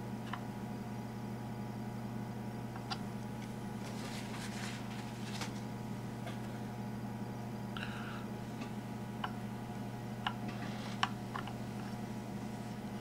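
Steady low hum with a few faint, short clicks and taps scattered through, the clearest near the end, from small fly-tying tools handled while resin is brushed on.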